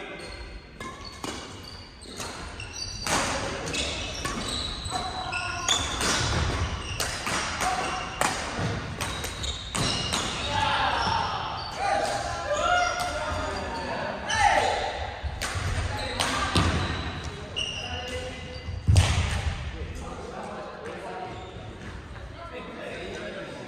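Badminton play in a large, echoing gymnasium: sharp racket strikes on shuttlecocks and thuds of feet landing on the wooden floor, many times over, with one heavy thud near the end. Players' voices call out over it.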